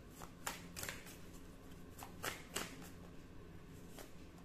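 A deck of oracle cards being shuffled by hand: faint, a handful of short, crisp card snaps at irregular intervals.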